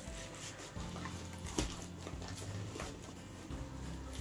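Soft rustling and crinkling of a diamond painting canvas and its clear plastic cover film as it is unrolled across a table, with a few light taps.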